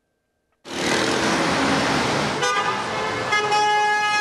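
City street traffic noise that starts abruptly under a second in, then car horns honking. One horn sounds from about two and a half seconds, and a second, longer horn joins it from about three and a quarter seconds.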